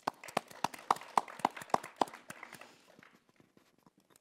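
A small audience applauding briefly with sparse, distinct handclaps that die away after about two to three seconds.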